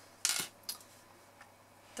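Large metal-bladed scissors handled and set down on a craft mat: a short scraping rustle, then a light click and a fainter one.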